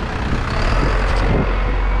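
Street traffic with a box truck passing close by, a heavy, steady rumble of engine and tyres that builds about half a second in.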